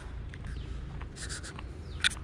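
Scratchy rubbing and light clicks of handling noise on a moving hand-held action camera, over a steady low rumble of wind on the microphone, with a louder scratchy burst about a second in.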